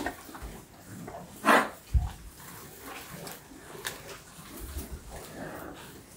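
Beef cattle moving in a barn pen at close range: one short, loud animal sound about a second and a half in, followed right after by a low thump, with quieter knocks and rustling around it.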